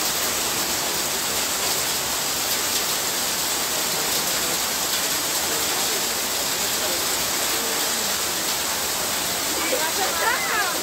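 Heavy rain and hail pouring down in a steady, even downpour, with no single impacts standing out.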